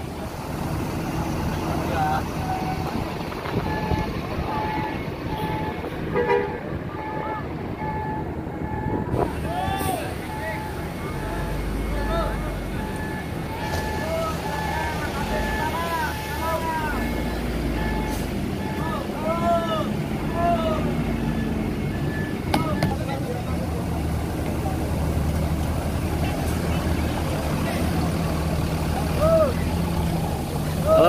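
Tour buses' diesel engines running with a steady low rumble. A steady repeating electronic beep sounds for the first dozen seconds, and people in a crowd are talking and calling out.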